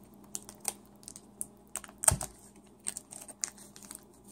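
Plastic trading-card pack wrapper being handled while someone tries to open it by hand: scattered light crinkles and clicks, with one louder knock about two seconds in.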